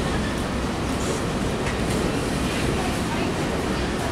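Empty coal cars of a freight train rolling by: a steady rumble of steel wheels on rail, with a few faint clicks.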